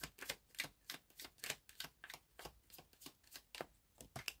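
A tarot deck being shuffled by hand, the cards slapping together in a steady rhythm of about three a second.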